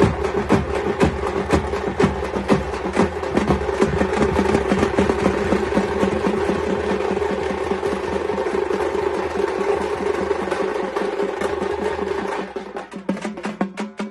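Tamte frame drums beaten rapidly with sticks in a dense, driving rhythm. Near the end the beat thins out and gets quieter.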